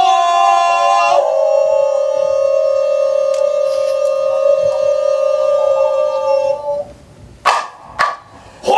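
A performer's voice holding one long, steady vocal call on a single note, with a small drop in pitch about a second in, fading out after about six and a half seconds. A brief sharp accent follows near the end.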